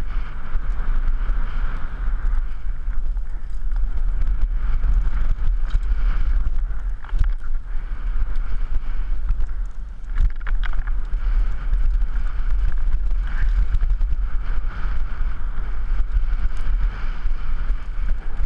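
Wind rushing over a helmet-mounted camera microphone as a downhill mountain bike runs fast down a dirt trail. Steady tyre noise on the dirt, with scattered clicks and knocks from the bike over rough ground.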